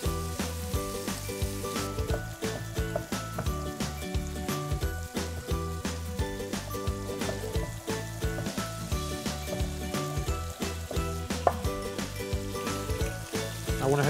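Chicken pieces and mushrooms sizzling as they brown in hot olive oil in an enamelled cast-iron pot, under background music. Knife cuts on a wooden chopping board mix in.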